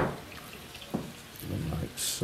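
Faint, steady sizzle of potato balls frying in a pan, with a single light click about a second in and a low murmur of voice near the end.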